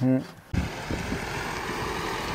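A Mercedes-Benz Sprinter 4x4 van's diesel engine running as the van pulls slowly into a parking spot, heard from outside under a steady rush of noise. It starts abruptly about half a second in.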